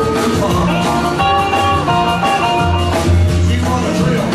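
Live rock and roll band playing a passage without singing: guitars with a run of single picked notes above upright bass and drums.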